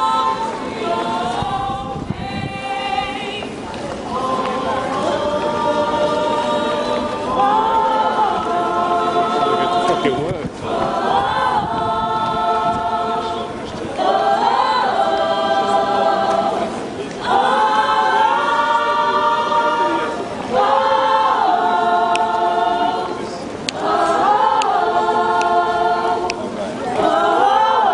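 A gospel choir singing a cappella, in held phrases of about three seconds with short breaks between them.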